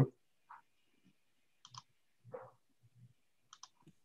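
Faint, scattered clicks and small noises, about half a dozen spread irregularly through a quiet pause.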